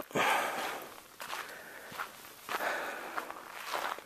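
A hiker's footsteps on a dirt trail: irregular scuffs and crunches, the loudest just after the start, with puffs of breath.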